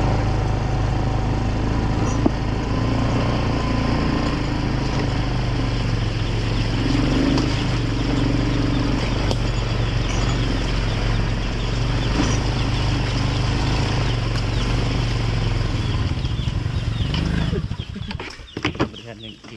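ATV engine running steadily at low speed as the quad rolls along a dirt track, its sound falling away near the end.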